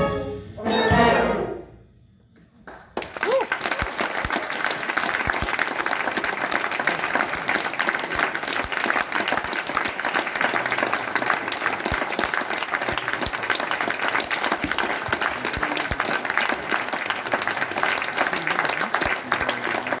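A concert wind band with brass sounds its final chord, which breaks off within the first two seconds. After a brief pause the audience breaks into steady applause that lasts to the end.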